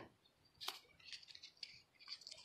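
Near silence, with one faint click about two-thirds of a second in and a few soft scratchy rustles of a hand handling a tulip bulb in loose peat-moss-and-compost potting soil.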